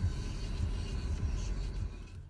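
Low, steady rumble inside a car's cabin.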